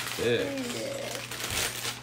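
Small plastic LEGO pieces clicking and rattling inside a clear plastic bag as it is handled, with a short vocal sound near the start.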